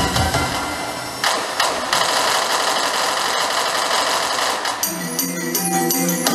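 Yamaha Electone Stagea ELS-02C electronic organ playing the closing passage of a piece. The bass and drums drop out about a second in, leaving a dense, busy high texture, and held chords with a clear bass line come in near the end.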